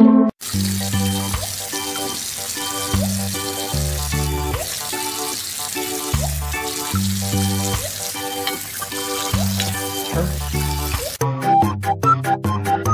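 Background music with a bass line, over the steady hiss of a tap running into a sink. The water sound starts about half a second in and cuts off sharply near the end.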